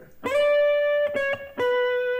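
Electric guitar playing a single-note melody phrase: a high D that bends slightly up into pitch and rings for most of a second, two quick notes passing through C sharp, then a lower B held and left ringing. The phrase moves from chord tone to chord tone of a G chord (D down to B).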